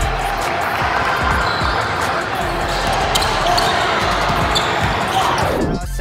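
Live sound of a basketball game in a gymnasium: a basketball bouncing on the hardwood court amid the voices of players and onlookers. The backing music drops out at the start and comes back just before the end.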